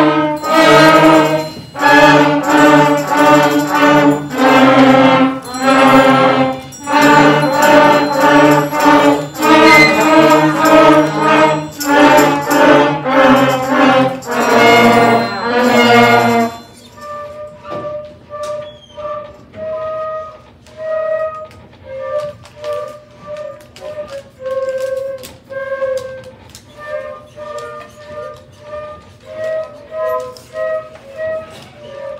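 Beginner school concert band playing, with brass and woodwinds sounding loud held chords in short phrases. About sixteen seconds in the full band stops and a small group of flutes carries the melody alone, much softer.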